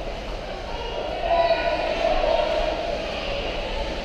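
Ice hockey rink ambience during play: a steady low rumble through the arena with distant shouting voices that swell to their loudest about a second and a half in.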